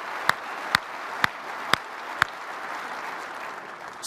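Audience applauding, with one person's louder single hand claps standing out about twice a second; these stop about halfway through and the applause dies down near the end.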